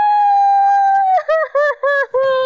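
A woman's long, high-pitched wail held on one note. About a second in, it drops a little and breaks into four short sobbing cries.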